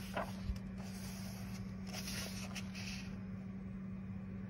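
Paper page of a paperback coloring book being turned: soft rustles and swishes of paper, the clearest about two seconds in, over a steady low hum.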